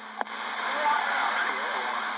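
CB radio receiving a transmission: a click as a station keys up, then loud static hiss with a weak, garbled voice underneath.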